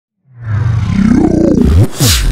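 Intro logo sting: a loud, roaring sound effect that swells in about a quarter second in, its pitch rising, with sweeping tones that close in on each other just before the end.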